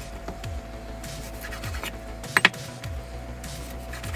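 Background music with a low, falling bass note that repeats, over a knife cutting raw chicken on a wooden cutting board. A little past halfway the blade strikes the board twice in quick succession with sharp knocks.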